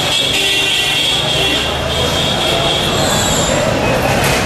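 Loud street noise of a crowd on foot among traffic, with voices mixed in. A steady high-pitched tone runs through it and stops about three and a half seconds in.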